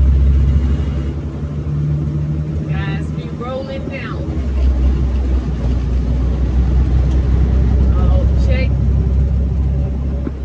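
Dump truck's diesel engine running on the road, heard from inside the cab as a steady low drone that grows louder about halfway through.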